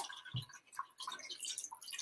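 Faint water dripping and trickling into a cup from a squeezed, water-soaked sanitary pad.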